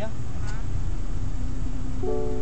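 Steady low rumble of a car's interior, with a brief voice fragment about half a second in.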